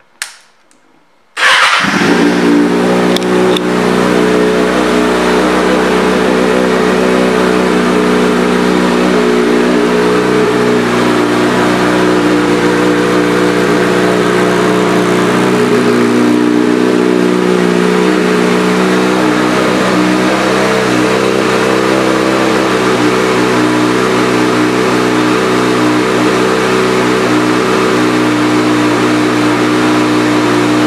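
2020 Kawasaki Ninja ZX-6R's 636 cc inline-four, fitted with an aftermarket M4 exhaust, starting up about a second and a half in and then idling steadily.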